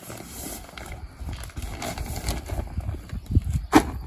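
Plastic-wrapped stall curtain rustling and scraping as it is pushed into a horse truck's side storage locker, over a low rumble, with one sharp knock near the end.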